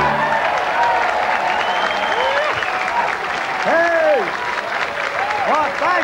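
Studio audience applauding as a song ends, with shouts and calls rising and falling over the clapping.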